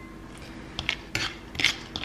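A handful of light clicks and scrapes against a dry nonstick frying pan holding pine nuts for dry-toasting. They start a little under a second in, after a quiet moment.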